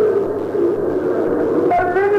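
Voices chanting a supplication (dua) in long, drawn-out tones. Near the end a clearer single voice comes in, holding its notes.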